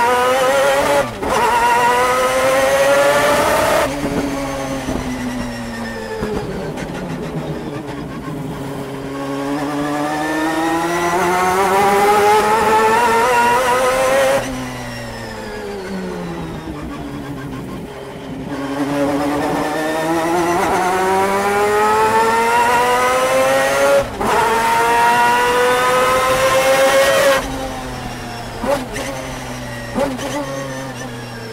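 The 600 hp four-rotor rotary engine of a 1991 Mazda RX-7 GTO race car, heard from inside the cockpit. It climbs hard through the revs three times, with a brief dip at each quick upshift, and after each climb the driver lifts off and the revs fall away for the next corner.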